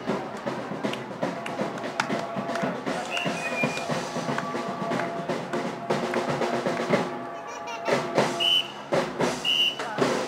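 Traditional New Orleans jazz band playing with a steady drum beat under sustained brass lines, a sousaphone among the horns.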